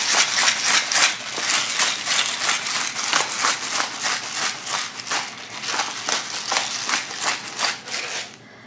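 Hand-twisted pepper grinder cracking peppercorns: a fast run of gritty crunching clicks that stops just before the end.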